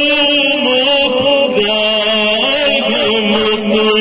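A man chanting a Kashmiri naat in long held notes that waver slightly and step to a new pitch every second or two.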